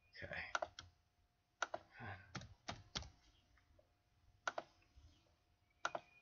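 Faint computer keyboard keystrokes and mouse clicks: about nine short, sharp clicks scattered irregularly.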